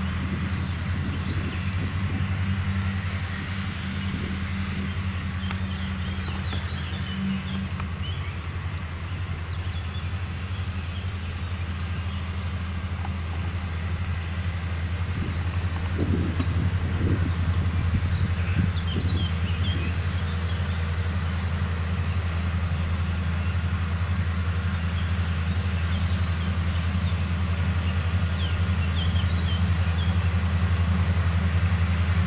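Steady low drone of a Steyr 6175 CVX tractor driving a Pöttinger Novacat front and rear disc mower combination through grass at a distance, getting louder about halfway through as it comes nearer. Over it, crickets chirp continuously in a high, fast pulsing trill.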